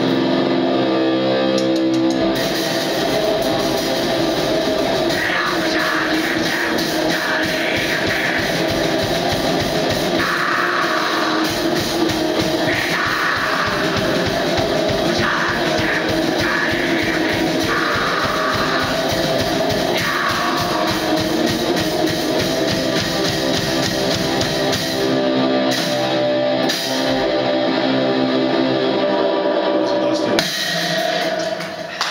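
Two-piece black metal band playing live: distorted electric guitar and drum kit, loud and dense. Vocals come in and out through the middle stretch.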